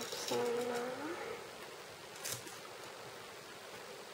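A brief hummed "hmm" from a woman's voice, rising slightly at the end, followed by faint rustling of washi tape and paper being handled, with one light tap about two seconds in.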